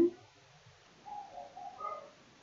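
Faint bird calls in the background: a few soft, short notes in the second half.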